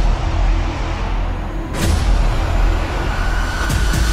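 Cinematic logo-intro sound design: a deep, heavy rumble with a sharp swooshing hit about two seconds in and another near the end.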